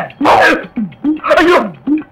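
A man's voice letting out short, breathy shouts without words, about twice, each falling in pitch.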